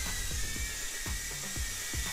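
High, steady whine of a JJRC H56 Taichi mini quadcopter's small motors and propellers as it hovers, over background music.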